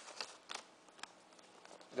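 Faint handling of a Blu-ray disc in a white paper envelope: a few light clicks and soft paper rustles in the first second, then quieter rustling.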